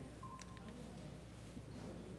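Quiet room tone with a low hum, and a short faint electronic beep about a quarter second in, lasting about half a second, with a couple of faint clicks.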